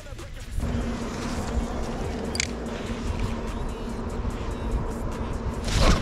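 A boat motor running steadily with a constant hum, starting about half a second in. There is a single short click a couple of seconds later.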